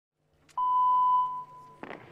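A single electronic beep: a click, then a steady high tone held for about a second before it fades.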